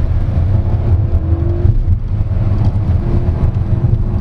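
Inside the cabin of a Lynk & Co 01 PHEV accelerating hard in sport mode: its 1.5-litre turbocharged three-cylinder engine runs under load over a steady low rumble.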